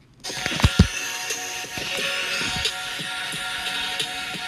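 Soundtrack of a smartphone video advertisement: electronic music with sound effects. It starts after a brief gap, with two deep thumps a little under a second in and scattered clicks.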